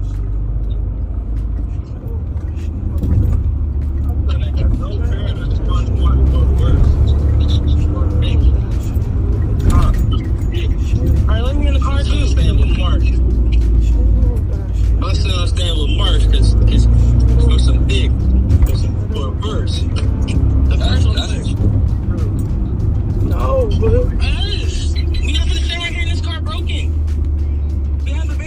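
Steady low engine and road rumble inside a moving car's cabin, picked up on a phone, with muffled, indistinct voices over it.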